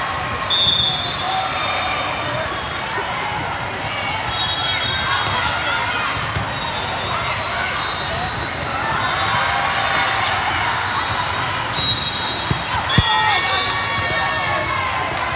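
Indoor volleyball rally: hard hits on the ball, the loudest one near the end, over sneakers squeaking on the court tiles and players' voices in a large echoing hall.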